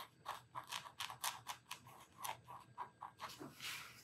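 White marker pen nib dabbing on mixed-media paper: a quick run of faint small taps, about five a second, then a short scratchy stroke near the end.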